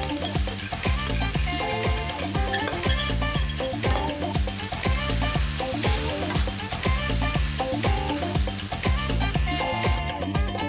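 Pasta and chopped fried meat sizzling in a hot frying pan as they are stirred with a wooden spatula, under background music with a steady beat.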